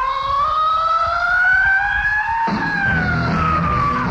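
Live rock band: a single held lead note slides slowly upward like a siren, and about two and a half seconds in the drums and bass come in as the note slides back down.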